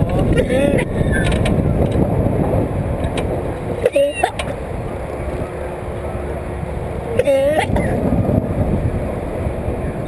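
Loud, steady wind rushing over the microphone of an open ride capsule as it swings through the air, with short, high, wavering cries from a rider near the start, about four seconds in and about seven seconds in.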